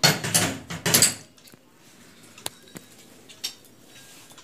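Metal clattering as a collapsible iron grille gate is rattled, in two bursts during the first second, followed by a few faint sharp clicks.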